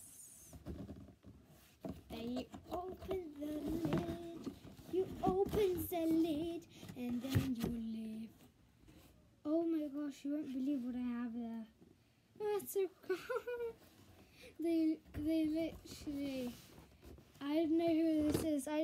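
A child's voice humming and murmuring without clear words, with a few knocks and rustles from the flaps of a cardboard box being opened.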